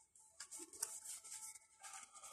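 Faint rustle of cardboard trading cards sliding against each other as a stack is leafed through by hand, starting about half a second in.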